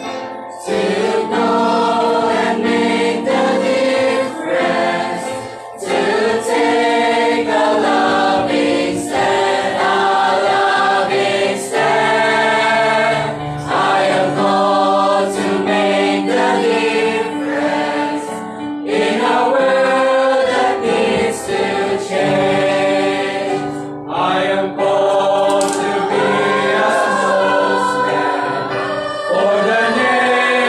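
Mixed church choir of men's and women's voices singing a gospel hymn together, with brief pauses between phrases.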